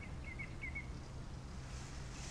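Quiet, steady low background rumble, with a small bird chirping faintly five or six times in quick succession in the first second.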